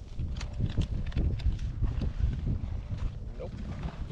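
Wind buffeting the microphone in a low, uneven rumble, with rustling and short clicks from items being handled while a backpack is rummaged through.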